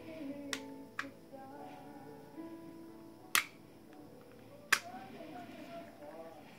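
Metal clicks and snaps from a Cyber Gun FNX-45 airsoft pistol's slide being worked by hand while its slide lock problem is shown: two light clicks in the first second, then two loud sharp snaps a little over a second apart in the second half. Music plays underneath.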